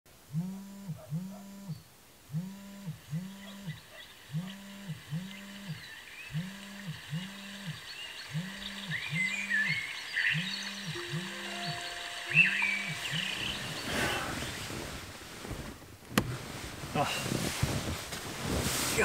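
Smartphone alarm vibrating: pairs of short buzzes repeating every two seconds, stopping about thirteen seconds in. Bedding and sleeping-bag rustling follows, with a sharp click near the end.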